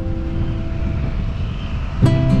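Last notes of an acoustic guitar ringing out and fading, leaving a steady low rumble of road and engine noise from the moving car.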